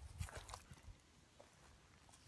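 Near silence, with a few faint soft bumps and small clicks in the first second or so.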